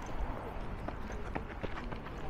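Footsteps on a paved path, a few sharp irregular taps in the second half over a steady low outdoor background.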